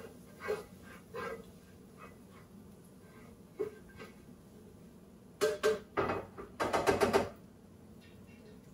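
A spatula scraping and knocking against a hot skillet in two short bursts of quick strokes in the second half, with faint popping of minced garlic frying in olive oil.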